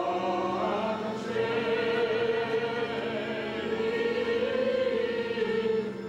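Choir singing a slow Armenian church hymn in long, held notes, with a steady low note sustained beneath the melody. The phrase ends just at the close, and the next one begins.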